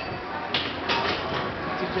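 Indistinct voices of people talking nearby over steady street background noise, with two short knocks about half a second and a second in.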